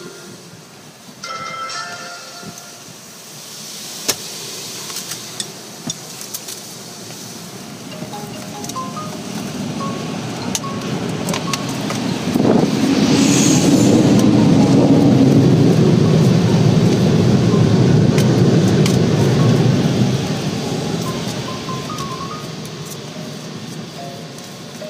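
Automatic car wash air dryers blowing on the car, heard from inside the cabin: a rushing of air that builds, is loudest for several seconds in the middle, then fades away as the car leaves the tunnel.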